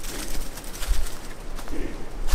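Footsteps crunching through dry leaf litter, with a bird cooing twice, at the start and near the end.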